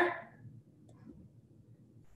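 The end of a spoken word, then near silence: room tone with a few faint, soft handling noises.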